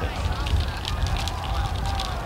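Outdoor ambience beside a cross-country course: a steady low rumble with crackle, and faint spectators' voices.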